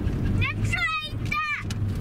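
Steady engine and road noise inside a moving car's cabin. Over it, a high-pitched voice calls out three short times in the middle.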